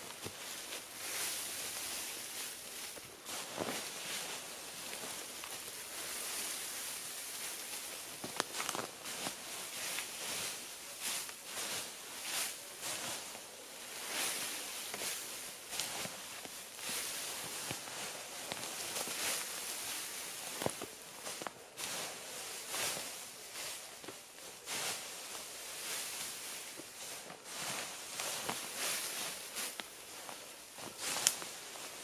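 Dry dead leaves rustling and crackling as armfuls are carried and dumped onto a stick-frame debris hut, with footsteps in the leaf litter.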